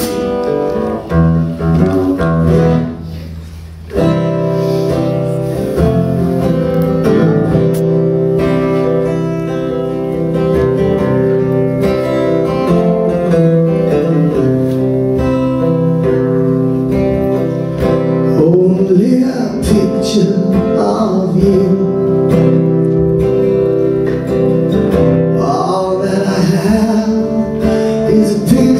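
Live band playing a song's introduction: acoustic guitar strumming with electric guitar and keyboards. The sound thins out briefly about three seconds in, then the full band comes in.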